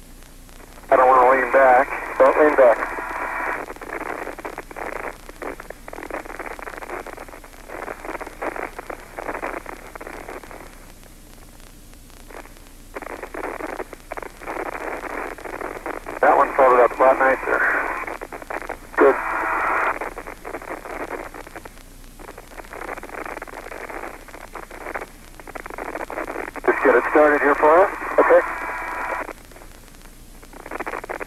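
Spacewalk radio chatter: voices squeezed into a thin, narrow-band radio sound with a hiss behind them, coming in several louder bursts: about a second in, around the middle, and near the end.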